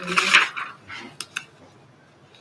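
A voice trailing off, then two sharp light clinks a fraction of a second apart, a bit over a second in, like small hard objects knocking against a table or each other.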